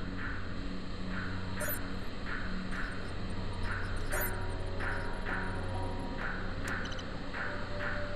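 Sci-fi cockpit sensor sound: a short electronic chirp repeating about twice a second over a steady low hum, the sound of a DRADIS scanning sweep running.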